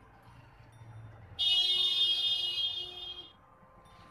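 A loud, steady, buzzing horn-like tone starts about a second and a half in, holds for about two seconds, then tails off.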